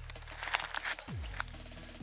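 Faint clicks and rustles of hands taking hold of fishing line at an ice hole, over a low steady hum.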